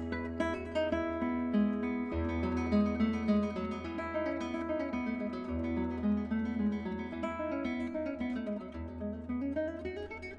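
Solo acoustic guitar music: picked notes ringing over a held bass note that changes about every three seconds.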